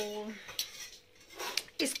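A metal spoon clinking against a steel plate, a few short light clinks.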